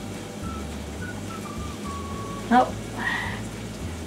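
Potatoes frying in a covered skillet, a faint steady sizzle, under soft background music with a few descending notes. A woman says a short "oh" about halfway through.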